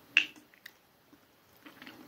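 A metal spoon clicks sharply once against a glass honey jar as it scoops thick honey. A few faint ticks follow, then soft mouth sounds near the end as the spoonful of honey is eaten.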